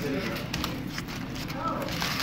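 Faint voices in the background, with a few soft clicks and taps in between.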